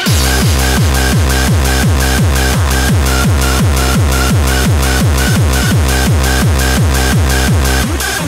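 Hard techno (schranz) track: a heavy, steady kick drum comes in right at the start after a break, with a short synth note repeating above the beat.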